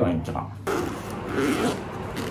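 Zipper on a fabric toiletry bag being pulled along, a rough rasping that starts about half a second in, after a few spoken words.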